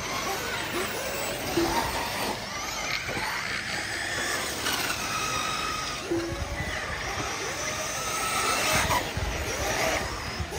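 Several 1/8-scale nitro RC truggies running around the track, their small glow engines buzzing at high revs, the pitch rising and falling over and over as they accelerate and lift off.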